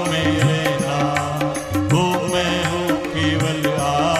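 Hindi devotional bhajan music, pitched melody over a steady beat of light percussion.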